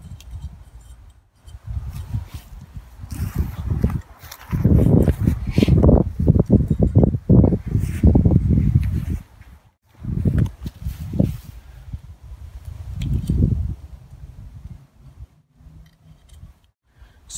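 Handling sounds of a folding stainless-steel mesh fire pit being put together: the mesh rustling as it is stretched, with knocks and clicks from the spring clips and metal leg tubes, coming in irregular bursts with short pauses.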